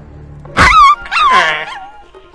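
Small dog yelping twice in quick succession: two loud, high-pitched yelps that waver and fall in pitch at the end.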